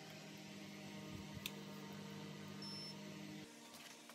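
Low steady electrical hum with a couple of faint light clicks and a brief faint high beep partway through; the hum cuts off abruptly near the end.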